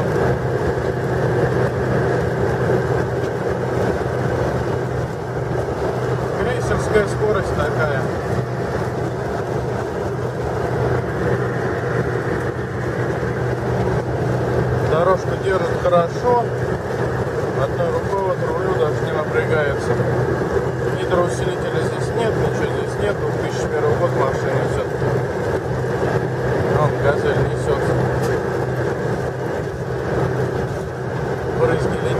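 A car running at highway cruising speed, heard from inside the cabin: a steady engine drone with road noise under it.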